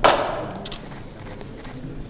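A single sharp knock at the very start that rings briefly in a hard-walled hall, followed by a few light clicks of footsteps on a marble floor.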